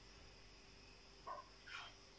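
Near silence: room tone with a faint steady hum, broken by two faint short sounds a little after the middle.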